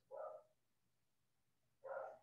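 A dog barking faintly: two short barks, one just after the start and one near the end.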